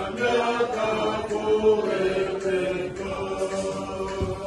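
Recording of a group of voices singing a worship song together, holding each note and moving from note to note without a break.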